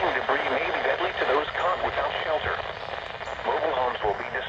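Synthesized weather-service voice reading a tornado warning, played through a Midland weather radio's small speaker.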